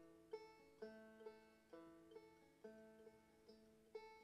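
A plucked stringed instrument played softly in a slow picked pattern: single notes and small note clusters sounding every half second or so, each left ringing.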